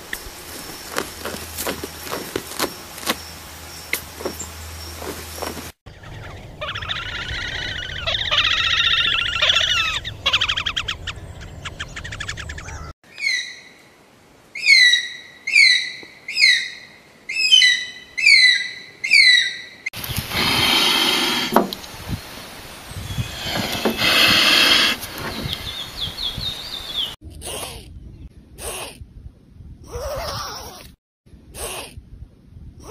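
A string of animal sounds. First comes a rapid run of clicks from a Hispaniolan solenodon, then a few seconds of chattering calls. Then a Philippine eagle gives a series of short, falling, whistled calls about one a second, followed by longer, rougher calls and a few short bursts near the end.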